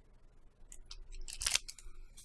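Plastic packaging crinkling and rustling as it is handled. Short crackly bursts start about two-thirds of a second in, and the loudest comes about halfway through.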